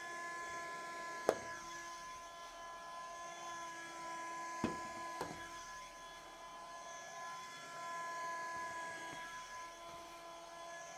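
Handheld window vacuum running with a steady whine as it is drawn across a wet blackboard. There is a sharp knock about a second in and two more near the middle.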